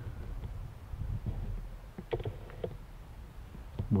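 Wind rumbling on the microphone, a steady low buffeting, with two faint short sounds about two seconds in.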